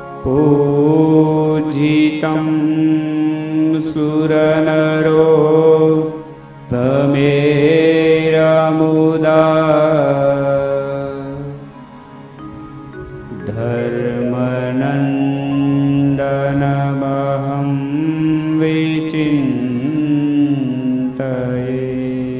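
A man singing a devotional Hindu dhun (chant) into a microphone over a steady drone accompaniment, in long held phrases with short breaks about six and twelve seconds in.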